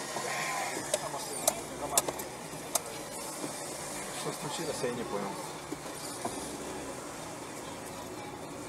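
Traffic and engine noise from inside a car, steady throughout, with faint indistinct voices and a few sharp clicks in the first three seconds.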